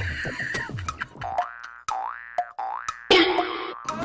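Cartoon comedy sound effects: a quick run of springy falling "boing" glides, then two rising whistle-like glides, then a short loud burst about three seconds in.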